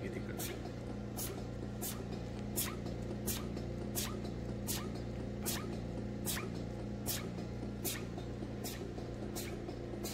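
Datascope CS300 intra-aortic balloon pump running, its helium drive giving a short, sharp hissing click about every 0.7 seconds as the balloon inflates and deflates. A steady machine hum runs underneath.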